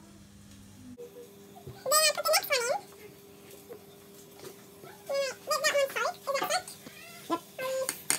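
A high-pitched voice making short rising-and-falling calls in three bursts, the first about two seconds in and the last near the end, over a faint steady hum that starts about a second in.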